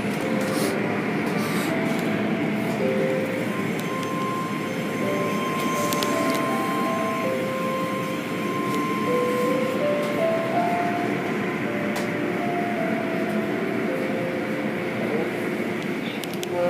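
Automatic car wash machinery running: a steady rush of spinning cloth brush curtains and water spray, with faint held tones at shifting pitches over it.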